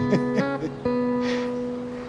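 Background music of plucked acoustic guitar: a few notes shift in the first half second, then a new chord is struck a little under a second in and left ringing.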